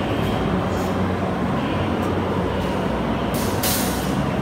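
500W fiber laser cutting machine running: a steady low hum with a hiss over it, and a short, louder hiss near the end.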